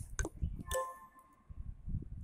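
A sharp tick, then a brief clink with a ringing tone that fades within about a second.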